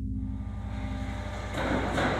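A steady low drone with a hiss that fades in and then swells up sharply, like a whoosh, about one and a half seconds in.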